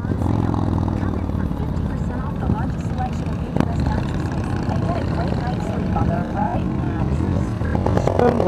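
Motorcycle riding noise heard from a camera on a moving Yamaha FJR1300: its inline-four engine running steadily under the rush of wind and road, with other touring motorcycles running close ahead through a left turn.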